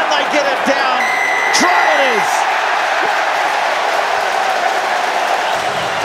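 Rugby stadium crowd cheering and shouting after a try, with a steady high whistle-like tone for about a second near the start.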